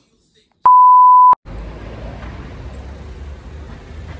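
A single loud, steady electronic beep at one pitch near 1 kHz, lasting under a second, of the kind used as a censor bleep. It cuts off abruptly and is followed by steady low outdoor background rumble.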